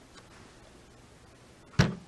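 Quiet room tone broken near the end by a single sharp thump.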